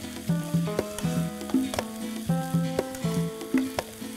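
Chopped onions and tomatoes frying in a non-stick kadai, stirred with a white plastic spatula, which gives sharp scrapes and taps against the pan every half second or so. Background instrumental music of steady held notes plays underneath.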